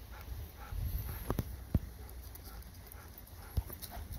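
Footsteps crunching on a gravel track, over a low steady rumble, with a few sharp knocks; the loudest comes about one and three-quarter seconds in.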